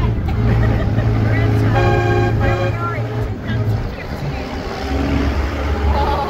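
Engine of a giant 4x4 monster-truck tour vehicle running under a ride, a steady deep drone that drops in pitch about four to five seconds in. A brief two-part steady tone sounds around two seconds in.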